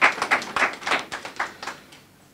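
Scattered applause from an audience, a few people clapping, thinning out and dying away near the end.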